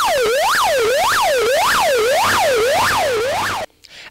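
Fire tanker truck's siren wailing fast, its pitch sweeping up and down about twice a second, then cutting off suddenly near the end.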